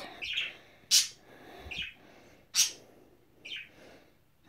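Budgerigar giving short, harsh chirps while held in the hand: two loud calls about a second and a half apart, with softer calls between them.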